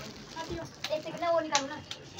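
Quiet talking voices in short phrases, with a few light clicks.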